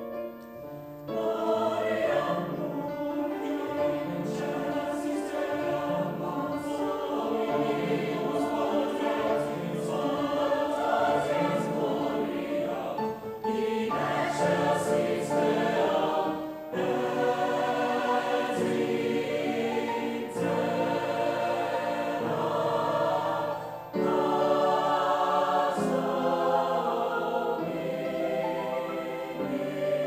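Mixed choir singing a movement of a mass with piano accompaniment. The voices come in about a second in and sing in long phrases, with brief breaks between them.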